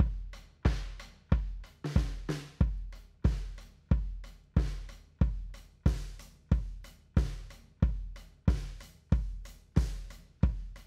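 A drum kit recorded with only a kick mic and two overheads plays a steady beat of about one and a half hits a second: kick, snare and cymbals. Tape saturation from FabFilter Saturn is being turned up on the kick mic.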